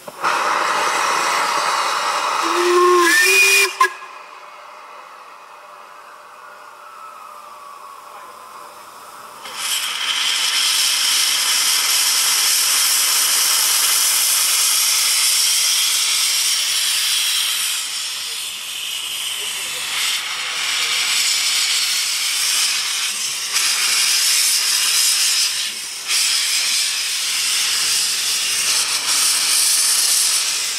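Double Fairlie steam locomotive Merddin Emrys blowing off steam with a loud hiss, with a brief whistle about three seconds in. After a quieter spell, a steady loud hiss of steam from the open cylinder drain cocks starts at about ten seconds and carries on.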